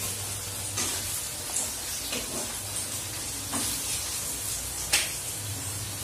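Sliced onions sizzling as they brown in hot oil in a pan, stirred with a metal spatula, with a few short scrapes of the spatula against the pan over a steady low hum.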